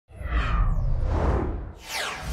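Logo-intro sound effect: a whoosh over a deep rumble, with a second whoosh falling in pitch near the end as the logo lands.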